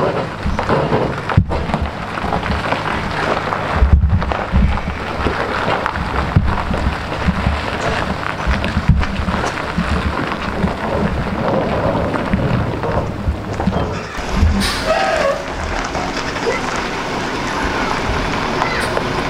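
Diesel truck running under way, a steady low engine drone buried in heavy road and wind rumble.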